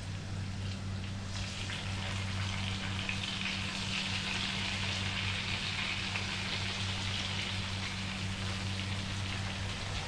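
Battered tempeh slices frying in hot oil in a pan: a steady sizzle that grows louder about a second in, over a steady low hum.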